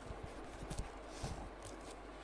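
A few light taps and brief rustles, like small handling noises, over a faint steady hum.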